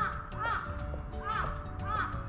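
A crow cawing four times in two quick pairs, over background music with long held notes.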